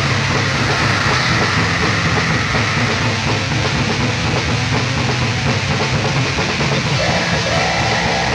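Black metal played on heavily distorted electric guitars, bass and drums, forming a dense, unbroken wall of sound from a lo-fi four-track recording.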